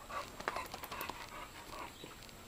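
Pit bulls panting and sniffing close by, in short breathy puffs repeating several times a second.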